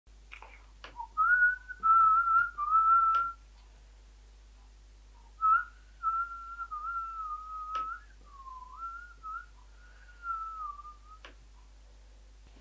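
A person whistling a wandering tune in two phrases, with a pause of about two seconds between them. A few sharp clicks from a laptop are heard along with it.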